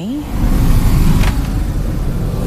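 Deep, loud rumble that swells in and holds steady, with a short sharp crack about a second in: the ominous sound of the destruction beginning.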